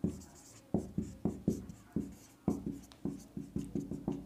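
Marker pen writing on a whiteboard: an irregular run of short, quick strokes as letters are written out.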